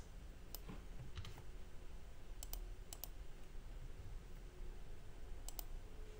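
A handful of faint, isolated computer keyboard and mouse clicks, spaced irregularly, as code is entered in the editor.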